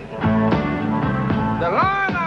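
Electric blues band playing live: a steady pulse of chords, with a lead line that bends up in pitch and falls away near the end.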